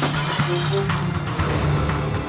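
A glass pane shattering with a sudden crash, the pieces tinkling down and dying away over about a second and a half: a window broken by a thrown stone. Dramatic background music with a steady low pulse plays under it.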